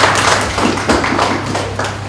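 An audience clapping: a run of irregular, overlapping hand claps that die down toward the end.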